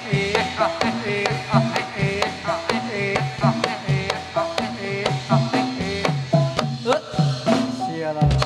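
Live Javanese gamelan music accompanying a jathilan horse dance: drums with falling-pitch strokes over ringing struck metal percussion, in a quick steady beat.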